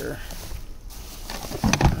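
Handling noise from items being moved about in a cluttered pile: rustling, with a quick cluster of knocks and clatter near the end.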